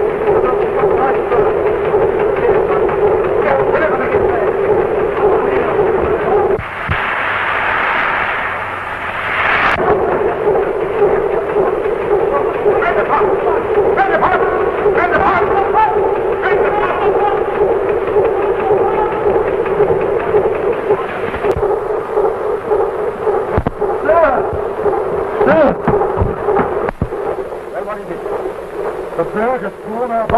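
Ship's engine-room machinery running loud and steady. For about three seconds, starting some six seconds in, a higher rushing noise takes its place before the steady din returns.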